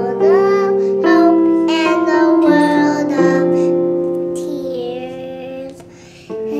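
A child singing a melody with piano accompaniment, the sung notes gliding over held chords and fading out near the end.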